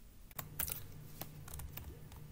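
A run of quick keystrokes on a computer keyboard, starting about a third of a second in, with a faint steady hum beneath.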